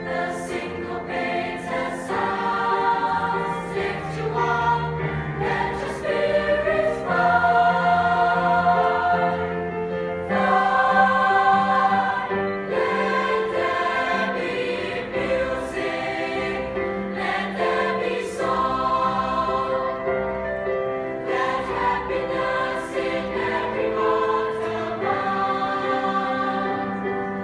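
Mixed choir of male and female voices singing in harmony, holding long chords that change every second or two and swell louder in the middle.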